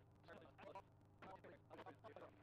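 Very faint, indistinct speech over a low steady hum, near silence overall.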